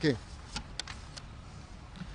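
A pause in a man's speech: low, steady background noise with four faint, short clicks about half a second to a second in.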